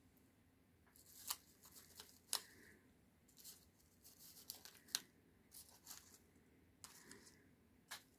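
Faint, scattered crinkling and rustling of paper as a die-cut paper cone and paper flowers are handled, with a few short, sharper clicks.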